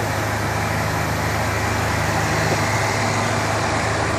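Steady background noise: a low hum under an even hiss, holding level throughout, with no speech.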